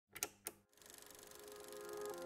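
A film projector starting up: two sharp clicks, then a rapid, even clatter that grows steadily louder. Faint held music notes come in under it near the end.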